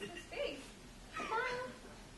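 A young woman's voice making two short, wordless vocal sounds with a gliding, whiny pitch, about half a second in and again just past a second in.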